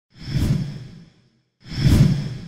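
Two whoosh sound effects from a logo intro, each swelling up quickly and fading away over about a second; the second begins near the end.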